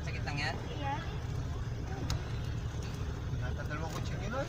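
Steady low engine and road rumble inside a moving passenger van's cabin, with faint passenger chatter in the first second and again near the end.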